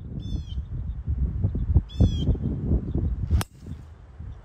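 A golf club strikes the ball on a tee shot with one sharp crack about three and a half seconds in. Before it, a bird calls twice, about two seconds apart, over a steady low wind rumble.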